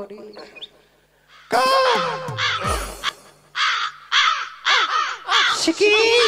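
Harsh crow cawing in repeated bursts, starting about a second and a half in after a near-quiet moment, with a low falling tone under the first calls.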